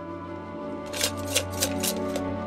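Bamboo fortune-stick cup (kau cim) shaken, the wooden sticks clattering in five or six quick rattles from about a second in, over soft background music with long held notes.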